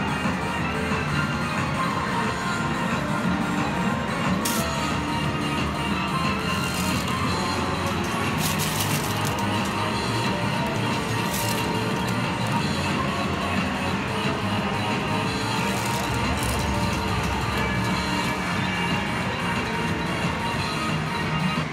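Steady arcade din of music and electronic game sounds from medal-pusher machines, with five or so brief clattering crashes scattered through it.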